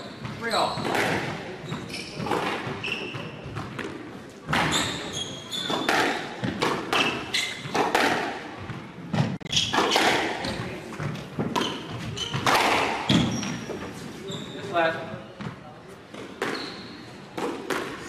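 Squash rally: the ball struck by rackets and hitting the court walls in a run of sharp impacts, with players' shoes squeaking on the wooden floor.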